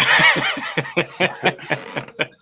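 A man laughing at a joke, a sudden burst followed by short rhythmic pulses of about five a second.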